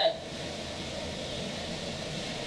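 Steady background hiss with no distinct event in it.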